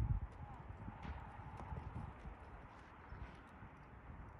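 A Quarter Horse mare's hooves on soft arena dirt as she stops from a lope: a heavy thud right at the start, then a few softer hoof falls fading away as she settles to a stand.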